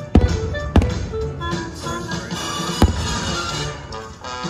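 Fireworks show music playing over distant firework bursts, with two sharp bangs about half a second apart just after the start and another a little before three seconds.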